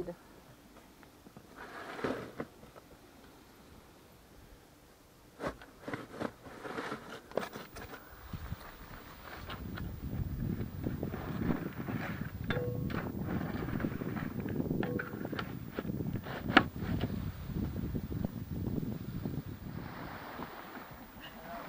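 Wind buffeting the microphone: a dense, gusty rumble that sets in about eight seconds in and grows louder. Before it, a few scattered knocks and clicks over quiet.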